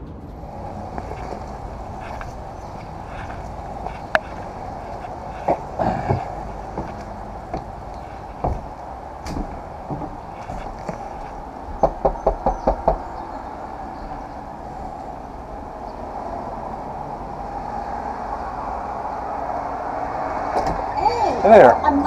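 A quick run of about six sharp raps at a front door, over a steady background drone with scattered single knocks.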